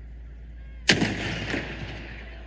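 A single loud explosive boom of a blank charge fired in a tank battle demonstration, followed by a rumbling echo that fades over about a second.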